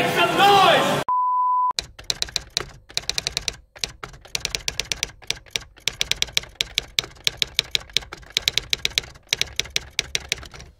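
Typewriter sound effect: rapid key clacks, several a second in uneven runs with short pauses, after a brief steady beep.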